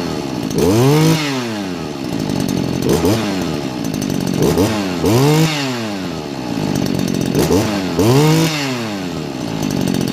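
Stihl KM 94 Kombi power head's small two-stroke engine running on its first start, revved up and let back down several times, roughly every two to three seconds.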